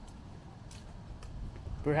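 Outdoor street ambience: a steady low rumble of city background noise with a couple of faint ticks. A man's voice starts speaking near the end.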